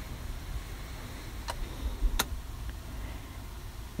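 Rear-armrest pop-out cup holder of a BMW X3 being pushed back in and its lid closed: two sharp plastic clicks, the second louder, and a faint third, over a faint low hum.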